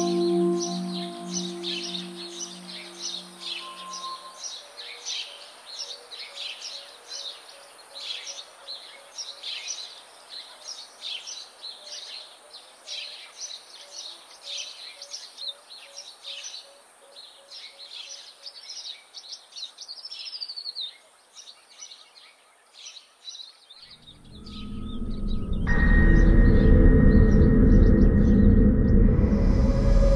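Birds chirping in many quick, short calls over a quiet room ambience. A ringing, singing-bowl-like tone from the score fades out in the first few seconds, and a loud low drone swells up about four seconds before the end.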